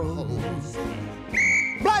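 A police whistle blown once in a short, steady, shrill blast about a second and a half in, over cartoon background music.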